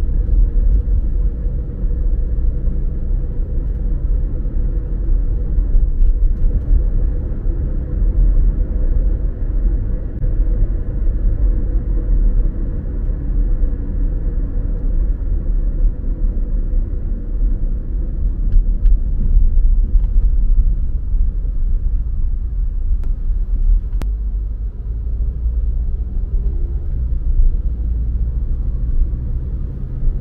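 Steady low rumble of a car driving on a city road, heard from inside the cabin: tyre and engine noise with a faint steady hum.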